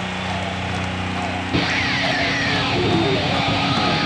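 Rock music on electric guitar: a held low note, then about a second and a half in, a sudden hit into louder, busier playing with high rising slides.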